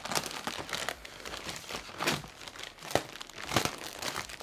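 Plastic poly mailer bag crinkling and tearing as it is ripped open by hand, an irregular crackle with a few louder rips in the second half.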